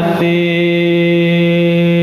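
A singer of a Central Javanese Dolalak song holds one long, steady note, settling onto it at the very start after a run of ornamented pitch bends.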